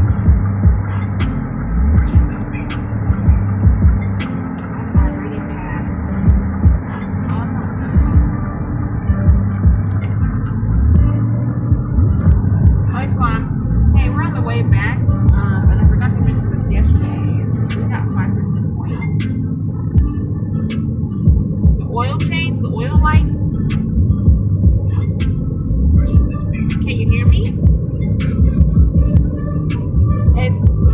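Low throbbing rumble and hum inside a moving car's cabin. Muffled voices come through now and then in the second half.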